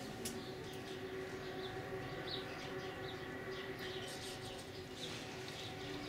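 Polar bear cub humming steadily while suckling from its mother: the even, pitched nursing hum that bear cubs make at the teat. Short high chirps come and go over it.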